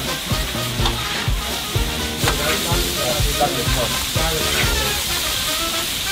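Small whole vendace (muikku) sizzling steadily as they fry in butter on a flat griddle. Background music with a steady beat plays underneath.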